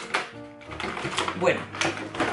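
Cardboard advent calendar door being pulled open by hand, a few sharp crackling clicks and rustles of card, under background music.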